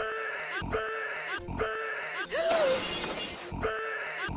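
A short snippet of movie audio repeated in a stuttering loop about every 0.8 seconds, three times, then broken a little past the two-second mark by a loud crash-like burst of noise lasting about a second, after which the loop resumes.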